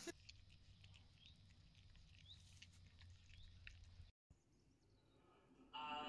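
Near silence, with a few faint soft ticks and short faint chirps.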